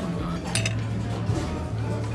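Metal fork clinking once against a dinner plate about half a second in, over background music with a steady bass line.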